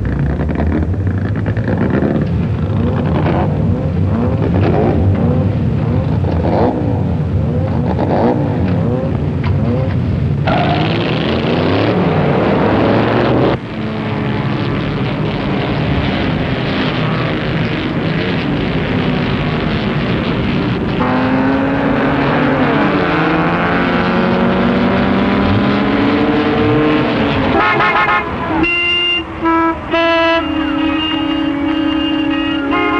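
Racing car engines running loud and revving, their pitch rising and falling as cars accelerate and go by. Near the end, a short run of horn-like toots.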